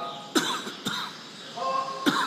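Two short coughs about half a second apart, over faint sustained tones.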